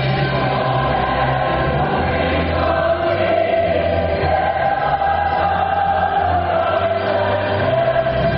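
Choral music: a choir singing long, held notes.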